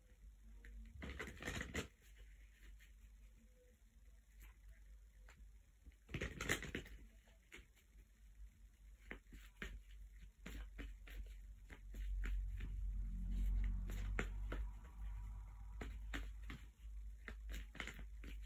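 A deck of oracle cards being shuffled and handled: light clicks and rustles throughout, with two louder shuffling bursts, one about a second in and one about six seconds in. A low rumble of movement follows later on.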